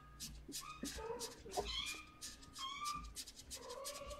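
Young kittens mewing: a rapid string of short, high squeaky mews with a scatter of soft clicks in between.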